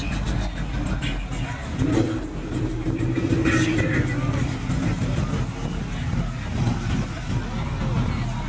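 Cars driving past on a busy road, a steady low engine rumble with one car's engine note swelling and loudest around the middle as it passes, over crowd chatter.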